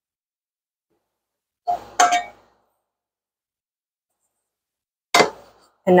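A nonstick skillet knocking on the stovetop as it is tilted to spread the oil. A small click and then a ringing metallic clang come about two seconds in, and a second sharp clang comes about five seconds in.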